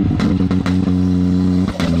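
Modified 400-hp Can-Am Maverick X3's turbocharged three-cylinder engine held at steady high revs under hard throttle, with a few sharp knocks over it. The revs dip briefly near the end.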